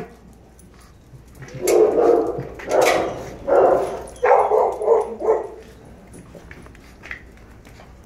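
A dog barking: a quick series of about six short barks between roughly two and five and a half seconds in.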